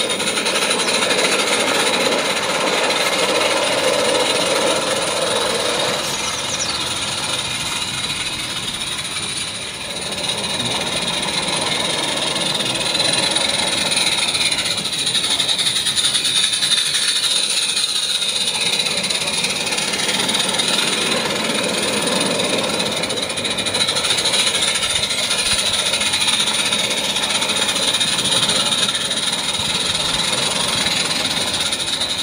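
Small gas-fired live-steam garden railway locomotive running with its train on 32 mm gauge track: a steady hiss of steam with rapid chattering beats, slightly quieter about ten seconds in.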